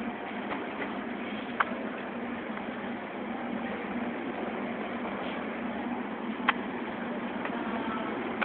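Outdoor street background: a steady, even hum of noise with no clear single source, broken by two short sharp clicks about a second and a half and six and a half seconds in.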